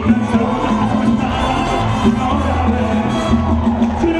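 Live merengue band playing at full volume, with the audience cheering over the music.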